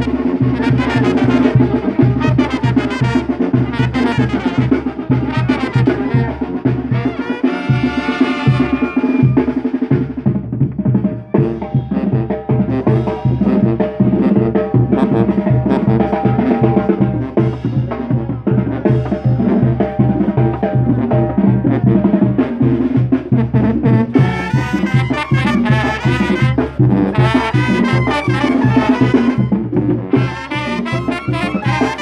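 Brass band music played loud, with trumpets over a steady, even drum beat.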